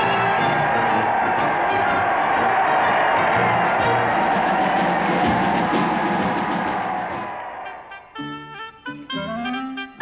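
Brass band music with trumpets, trombones and drums, full and loud. About seven and a half seconds in it fades into a quieter passage of separate held notes.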